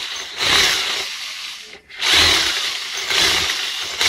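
Handheld electric drill with an 8 mm bit boring at an angle into the top of a small combination safe, aimed toward the combination wheel. It runs in two long spells, dipping briefly a little before two seconds in, then running again.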